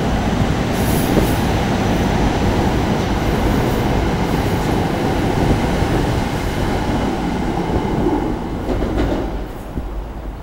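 SEPTA Silverliner IV electric commuter train passing close by: a loud, steady rush of wheel and rail noise that fades near the end as the train pulls away.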